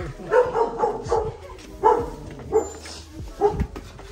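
A dog barking: a string of short barks, irregularly spaced.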